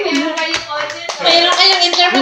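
Hand clapping in a small room, irregular claps, with voices talking over them from about a second in.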